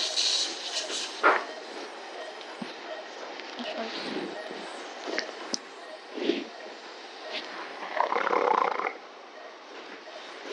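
Operating-room sounds during nose surgery: a steady hiss with a few sharp clicks of metal surgical instruments, and a louder rough noise lasting about a second near the end.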